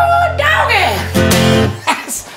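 Final acoustic guitar chord ringing under a man's voice, which holds a high note and then falls away in a wavering slide. The chord's ringing stops near the end.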